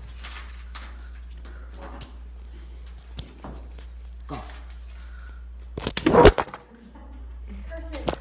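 A phone's microphone fumbled and knocked as the phone is dropped: a loud, sudden clatter about six seconds in, with scattered voices of children in a room and a steady low hum.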